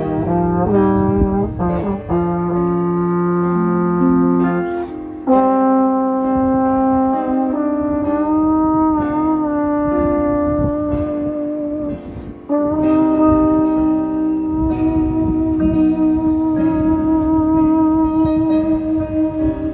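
Slide trombone playing a slow melody of long held notes, one of them with a wavering vibrato about halfway through, with short breaks for breath around five and twelve seconds in. An electric guitar strums chords underneath.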